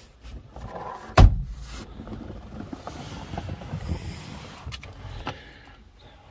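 One sharp knock about a second in, then low, irregular rustling and handling noise with a few faint clicks, heard inside a car cabin.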